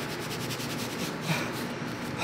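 A paper napkin rubbed quickly against the mouth, nose and beard in a fast series of scrubbing strokes, about ten a second.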